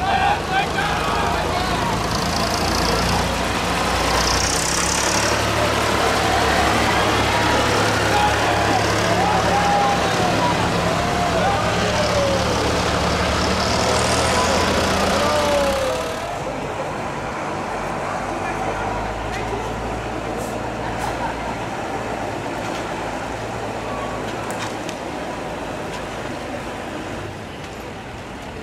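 A police van's engine running as it drives off, with people's voices and calls over it. About sixteen seconds in it cuts to a quieter stretch of street with a low engine hum.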